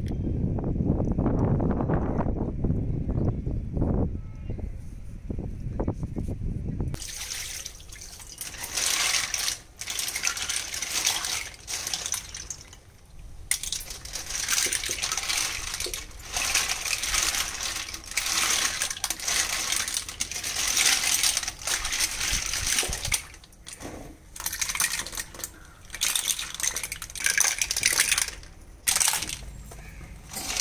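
Wind buffeting the microphone for about the first seven seconds. Then clams being washed by hand in a steel plate of water: shells clinking against each other and the metal, with water sloshing, in irregular bursts.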